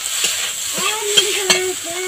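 A metal spatula stirring and scraping neem leaves and eggplant frying in oil in a metal karai: steady sizzling with sharp clicks of the spatula on the pan, two louder ones past the middle.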